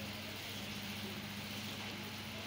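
Steady low electrical hum with a faint hiss, one even tone and its overtone holding level throughout.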